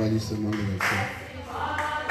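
A group of voices singing together in a melodic, chant-like line.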